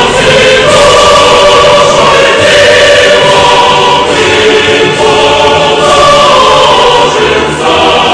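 Choral music: a choir singing long held chords.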